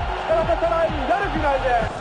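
Archival TV football commentary: a man's voice over a noisy background, with music beneath.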